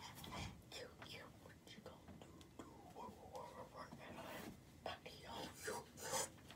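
A person whispering faintly.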